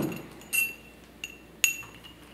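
Porcelain bowls clinking together: three light clinks, each with a brief ring, the last one the loudest.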